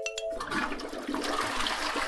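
Toilet flush sound effect: water rushing that starts about half a second in, as the last ringing notes of a chime die away.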